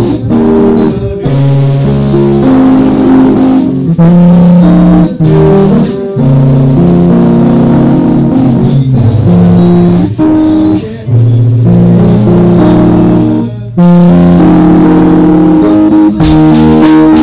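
A live rock band plays a slow ballad: sustained electric guitar and bass chords that change about once a second, with short breaks between phrases. The recording is very loud and clipped, so it sounds distorted.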